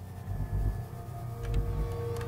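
Low rumbling drone of horror-trailer sound design, with sustained tones held above it and a faint tick about one and a half seconds in.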